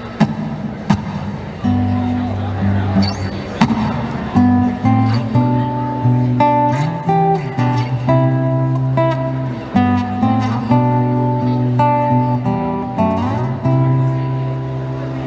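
Acoustic guitar playing a slow picked intro, single notes ringing over a low bass line, with a few sharp knocks in the first four seconds.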